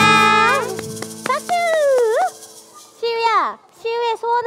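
Children and a woman singing the last held note of a children's song over live keyboard accompaniment, ending about a second in. It is followed by a few sharp clicks, a voice sliding down and back up, and short bursts of voices near the end.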